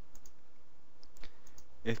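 Several light computer mouse clicks, scattered irregularly, with a man's voice starting near the end.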